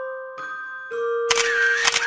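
Soft glockenspiel-like music with slow, ringing notes. About a second and a half in, a loud hissing sound effect with a wavering whistle-like tone comes in two parts, together about a second long, and is the loudest thing heard.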